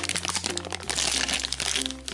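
Shiny foil blind-bag wrapper crinkling and crackling as fingers squeeze and work it open, over soft background music.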